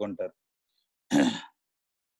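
A man clearing his throat once, briefly, about a second in, with dead silence before and after it.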